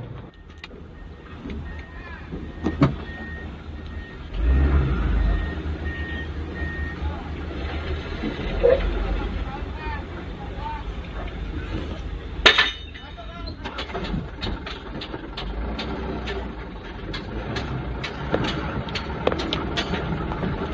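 Diesel garbage dump trucks running, with a reversing alarm beeping about twice a second for the first several seconds and an engine surge about four seconds in. Sharp knocks and rattles run through the second half.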